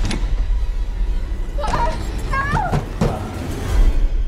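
Horror film sound mix: a deep steady rumble under several heavy thuds and knocks. A little after the midpoint comes a short shrill sound that slides up and down in pitch.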